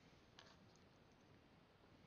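Near silence, with one faint click about half a second in and a few fainter ticks just after it.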